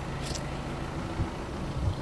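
Low, steady mechanical hum under faint even background noise.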